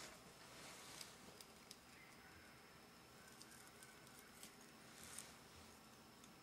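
Near silence: room tone with a few faint scattered clicks and rustles from hands handling a needle and thread, over a faint steady high whine.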